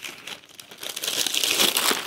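Gift wrapping paper crinkling and rustling as a small dog paws at a wrapped present, quiet at first and building to a busy, loud crinkling from about a second in.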